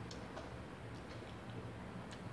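Chewing food: soft, irregular wet mouth clicks and smacks, over a low steady hum.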